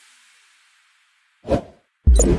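The song's last faint tail dies away into silence, then a single short whoosh sound effect comes about one and a half seconds in.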